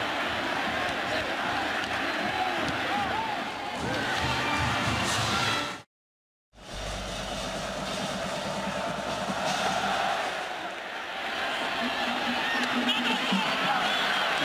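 Football stadium crowd noise with music playing over it; about six seconds in, the sound cuts out completely for about half a second, then the crowd and music return.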